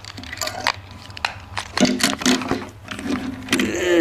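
Scattered clicks and light knocks of plastic toys and packaging being handled on a wooden table, with a faint voice in the background about halfway through.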